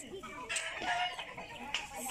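Chickens calling faintly in the background.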